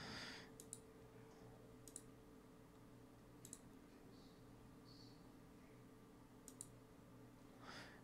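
Near silence with a handful of faint computer mouse clicks, spaced a second or more apart, over a low steady hum.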